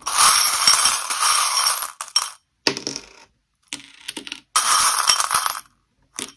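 Small metal charms jingling and clinking as they are shaken and cast: two longer stretches, at the start and about four and a half seconds in, with short bursts between.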